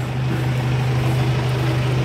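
A steady low hum, unchanging throughout, with a faint higher tone above it and a light background hiss.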